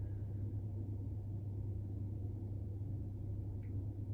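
Steady low background hum with no other sound event: room tone.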